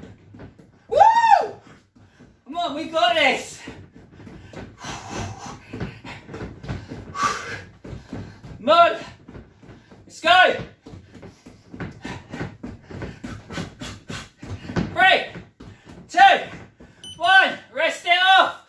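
A man's short shouts of effort at intervals of a second or more, with a run of quick knocks from punches landing on a freestanding rubber punching dummy.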